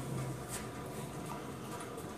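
Low steady background noise with a faint click about half a second in.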